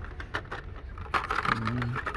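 Plastic blister-packed die-cast toy cars on cardboard cards being handled on metal display pegs: a run of light clicks and plastic crinkling, busiest a little after the middle. A short steady hum of a man's voice comes near the end.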